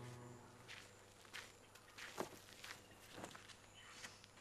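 Footsteps in sandals on a dirt yard: a handful of soft, uneven steps, after a music cue fades out in the first half second.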